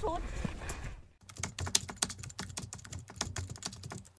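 Voices in the open air for about a second, then a cut to rapid, irregular computer-keyboard typing clicks: a typing sound effect.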